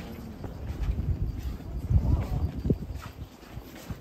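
Footsteps on pavement from people walking, under irregular low rumbling from the filming microphone being carried along at walking pace, loudest about two seconds in.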